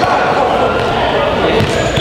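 A basketball bouncing on the gym floor as a player dribbles, a few thuds in a large hall, with voices talking in the background.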